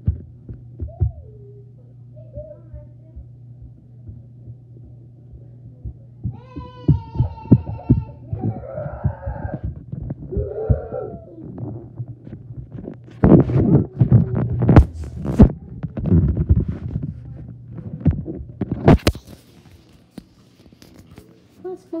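Handling noise from a covered camera microphone: a steady low hum with irregular thumps and rubbing, densest in the second half. A short high-pitched call comes about seven seconds in, followed by muffled voices.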